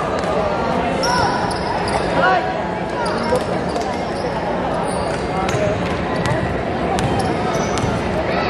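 Basketball being played on an indoor hardwood court: sneakers squeak in short bursts and the ball bounces, over the chatter of spectators' voices in a large gym.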